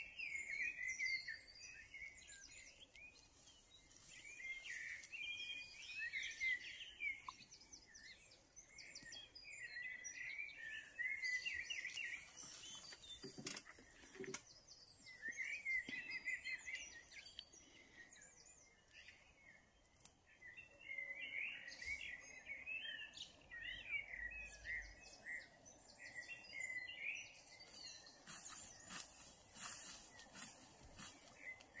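A songbird singing in short phrases of quick notes, repeated every few seconds, over faint outdoor background noise.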